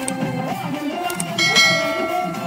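Devotional bhajan music with drums and keyboard. A short click about a second in is followed by a bright bell ding that rings out near the end, the sound effect of an animated subscribe-and-notification-bell overlay.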